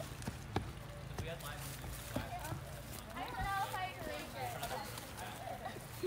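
Quiet outdoor ambience with one faint, distant voice calling out about three and a half seconds in, and a few light knocks.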